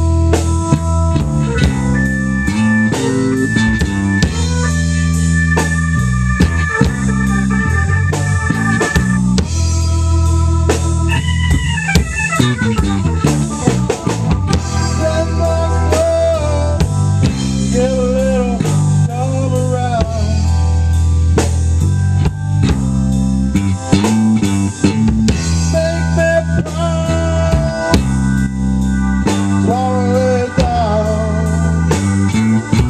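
Live rock band playing: Rickenbacker 4003 electric bass, organ and a Tama Silverstar drum kit, with a steady drum beat under sustained organ chords. A falling sweep in pitch runs down through the mix about eleven seconds in.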